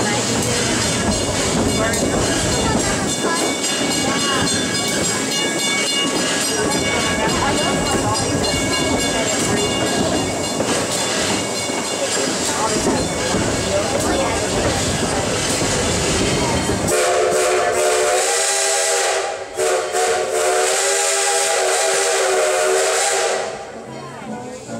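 Steam train's passenger cars rolling along the track with a steady rumble and clickety-clack of wheels on rail joints. Near the end the locomotive's steam whistle blows a chord of several tones for about six seconds, with one brief break, very loud.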